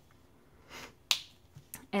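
Copic marker cap clicking: one sharp, loud snap about a second in, after a soft rustle and followed by a lighter tick.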